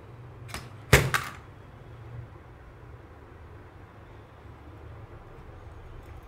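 Sharp clicks about a second in, one loud and one close after it, as fingers work the perforated sheet-metal cover of a 24 V switch-mode power supply module. A faint low steady hum follows.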